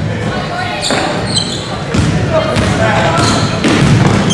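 A basketball bouncing a few times on a hardwood gym floor as a player dribbles it up the court. Short high squeaks and spectators' voices echo through the gym around it.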